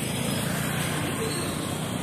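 Steady noise of city road traffic, with no single vehicle standing out.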